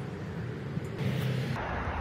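Steady outdoor background noise with no distinct event; its character changes about one and a half seconds in.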